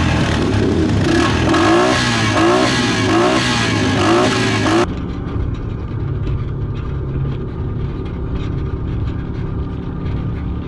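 ATV engine revved in a string of quick rises as its rear wheel spins and throws sand. About five seconds in, it gives way to a side-by-side's engine running lower and steadier as the UTV drives over sand.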